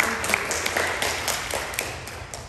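Audience applauding, many hands clapping at once, thinning out near the end.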